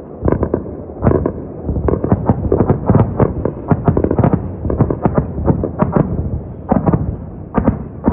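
A dense, irregular string of sharp bangs and booms, several a second, heard under a night sky. It is presented, with the narrator's own hedging, as what seemed to be Iran's air defence firing at incoming missiles over Tehran.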